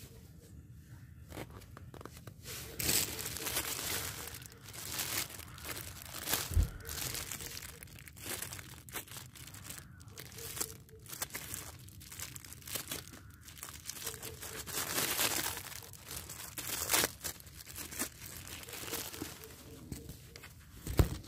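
Plastic bag crinkling and tearing as gloved hands unwrap a small metal part. The rustling comes in irregular bursts, loudest about three seconds in and again around fifteen seconds in.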